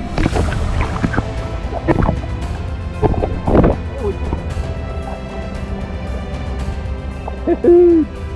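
Background music with a steady tone, with loud water splashing and sloshing close to the microphone in bursts during the first four seconds. A short pitched call-like tone comes near the end.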